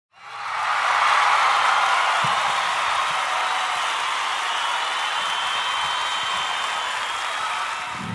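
A crowd cheering and clapping, swelling in over the first second and then holding steady.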